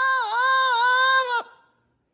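Double yellow-headed Amazon parrot singing one long held note with a small dip in pitch, stopping about one and a half seconds in.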